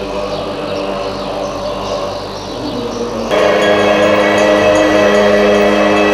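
Tibetan Buddhist monks chanting together in long, held tones. About three seconds in the sound turns suddenly louder and fuller, with sustained pitches.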